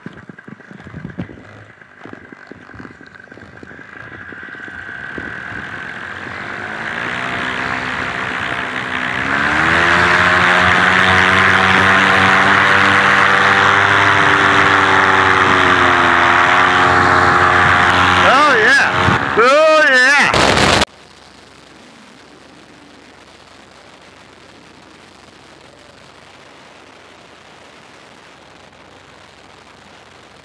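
Paramotor engine opening up for a takeoff run, climbing in pitch and loudness and then running steadily at full throttle. Near the end of the run its pitch wavers sharply, then the sound cuts off abruptly about 21 seconds in, leaving a steady hiss.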